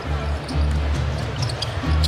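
A basketball being dribbled on a hardwood court over arena music with a steady low bass.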